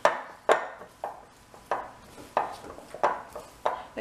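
Sticky cheese-and-almond-flour dough being kneaded by hand in a glass bowl: about seven even, sharp slaps and knocks, one every half to two-thirds of a second.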